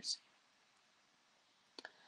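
Near silence in a pause in speech, with a faint hiss and two quick, faint clicks close together near the end.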